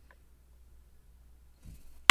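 Near silence over a low steady hum, with a faint tick about the start as a steel lock pick works the spool-pinned chambers of the lock.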